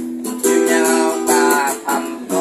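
Steel-string acoustic guitar strummed and picked in a slow bolero accompaniment, chords ringing between strokes.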